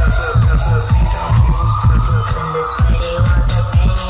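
Loud electronic dance music from a DJ set over a festival sound system, with a steady heavy kick drum about twice a second under synth lines.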